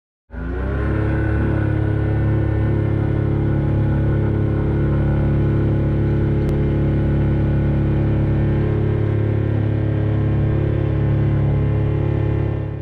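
Motor glider's engine running at steady full takeoff power, a constant deep drone heard from inside the cockpit during the takeoff roll and climb-out.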